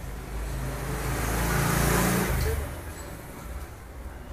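A road vehicle passing by, swelling to its loudest about two seconds in and then fading away.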